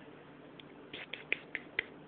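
A person making a quick run of short, sharp clicks, about six in just over a second, to draw a cat's attention.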